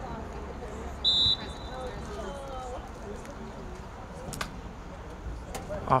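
A referee's whistle blown once, short and sharp, about a second in, over distant voices of players and spectators on an outdoor field.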